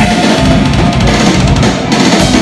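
Metalcore band playing live at full volume: distorted electric guitars over a drum kit, with the bass drum pounding in about half a second in.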